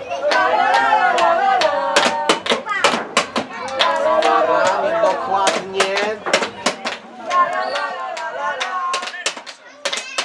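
Voices talking or singing over music, with many sharp clicks throughout.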